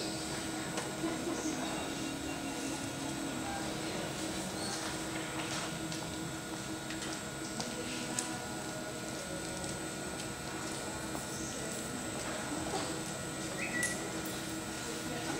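Steady hum of an indoor arena with a faint murmur of distant voices and a few soft, scattered knocks.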